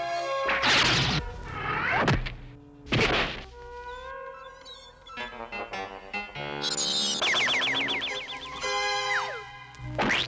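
Cartoon soundtrack music with several sudden swooshing hits in the first three seconds, then a lighter passage with a fast fluttering run and a falling glide near the end.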